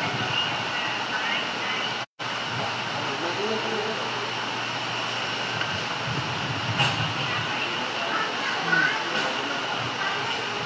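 Steady background hiss and hum of an open-air gathering with faint, indistinct voices, broken by a brief dropout to silence about two seconds in.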